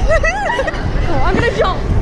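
Excited girls' voices with high squeals over a background of crowd babble, and a shout of "go" near the end, all over a steady low rumble.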